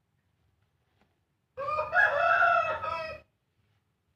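A rooster crowing once, a single call of under two seconds that starts about halfway through.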